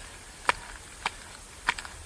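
Touring skis and bindings clicking in step with a skier's strides through snow: three sharp clicks about two-thirds of a second apart, over a faint steady hiss.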